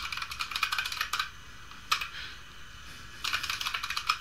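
Typing on a computer keyboard. A quick run of keystrokes comes first, then a single keystroke about two seconds in, then another fast run near the end.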